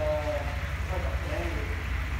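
A steady low hum runs throughout, with a faint murmured voice twice.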